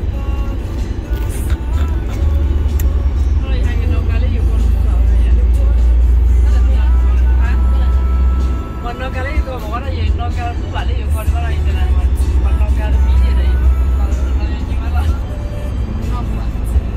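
Steady deep rumble of a van's road and engine noise heard inside the cabin while driving on a highway, easing briefly about halfway through, with music and voices over it.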